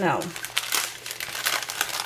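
Diamond painting canvas and its paper sheet crinkling and rustling as they are handled and rolled up, in quick, irregular crackles.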